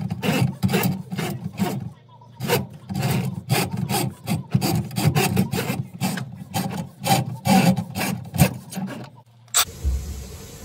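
Drain snake's coiled steel cable being worked through a drain pipe, rasping and scraping in quick repeated strokes, about three a second, as the line is cleared of a backup. The strokes stop about nine seconds in.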